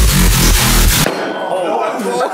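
Electronic dance music with heavy bass cuts off abruptly about halfway through. Live sound follows: a metallic clang from the sledgehammer work on the pillar, with ringing and voices behind it.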